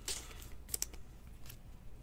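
Trading cards handled and slipped into a soft plastic card sleeve: a faint rustle of chromium card stock and plastic, with a few small sharp clicks, two close together a little under a second in.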